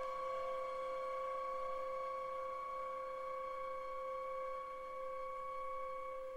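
Symphony orchestra holding the steady closing chord of a modern symphonic Adagio, several sustained pitches unchanging throughout.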